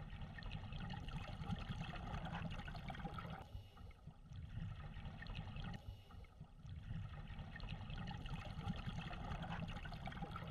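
Faint, steady trickling water sound that dips briefly twice, about three and a half and six seconds in.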